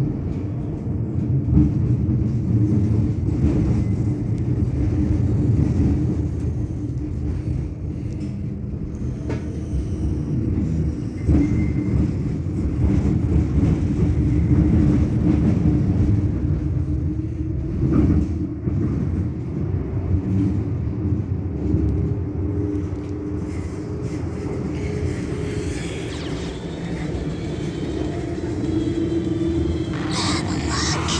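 A Bombardier Flexity Outlook tram standing at a stop, humming steadily over a low, uneven rumble. A higher hiss joins near the end.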